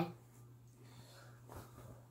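Faint rustling of a khaki uniform shirt being pulled on, over a steady low hum.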